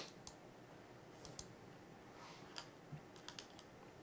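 A handful of faint, sharp, separate clicks from a computer mouse over near-silent room tone, with a quick cluster of three late on.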